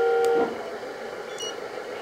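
Electronic sound from the RC hydraulic bulldozer's sound module, set off from the transmitter's SWB switch: a steady buzzy multi-note tone that cuts off about half a second in. A few faint high pips follow.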